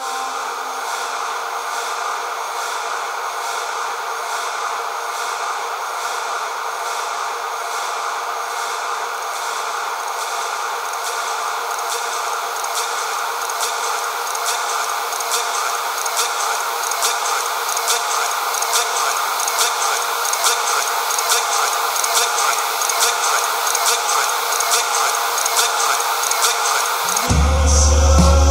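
Electronic music: a dense, steady wash of synthesized noise with a regular ticking pulse in the highs, slowly building in loudness. Deep bass enters about a second before the end.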